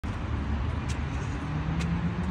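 Steady low rumble of road traffic, with a low steady hum joining in about three quarters of the way through and two faint clicks.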